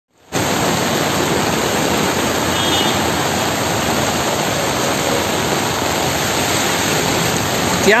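Heavy rain pouring onto a flooded street: a steady, loud rushing hiss of rain and water. A brief high tone sounds about two and a half seconds in.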